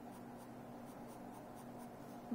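Graphite pencil drawing short strokes on sketch pad paper: a faint run of repeated light strokes, over a faint steady hum.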